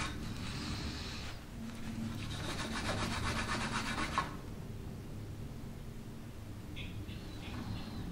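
Lint-free cloth rubbing quickly back and forth over a mahogany curtain pole, buffing a filled repair coated with liquid scratch cover to bring back its sheen. The rubbing pauses briefly about a second and a half in and stops a little after four seconds.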